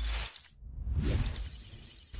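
Sound effects of an animated logo intro. A sudden hit with a deep low end comes first. A second swell of rushing noise follows about half a second in, then fades away.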